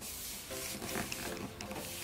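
Hands rubbing and pressing a sheet of paper flat onto glued cardboard: soft, short dry paper rustles. Quiet background music plays underneath.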